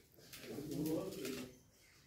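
A person's short hummed, coo-like vocal sound lasting about a second, with a wavering pitch and no clear words.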